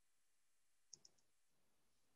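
Near silence in a pause between spoken phrases, with three faint, very short clicks close together about a second in.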